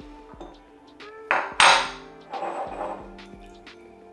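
A whisky bottle and glass being handled: two sharp clinks about a second in, the second louder with a brief ring, followed by a softer rustling rush, over steady background music.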